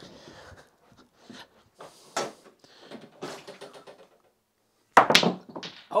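Snooker cue striking the cue ball about five seconds in, followed by a quick run of sharp clacks as the balls smash into the pack of reds. Before it, faint shuffling and light knocks as the player moves round the table.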